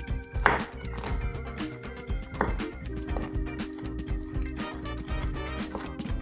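Chef's knife chopping onion on a wooden cutting board: quick, uneven knocks of the blade against the wood, about two a second, over steady background music.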